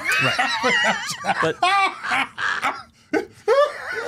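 Several men laughing together, their laughs overlapping, with a brief lull about three seconds in before the laughter picks up again.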